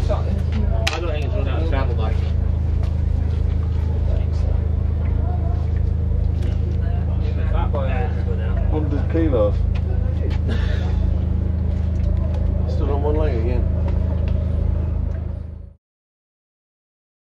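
A steady, low engine hum with indistinct voices over it. The sound cuts off abruptly near the end.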